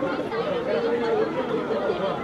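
Several men talking over one another in Hindi, one saying that something has to be held.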